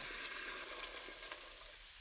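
Tomato sauce sizzling as it hits hot olive oil and tomato paste in a stainless steel pot, the hiss slowly dying down.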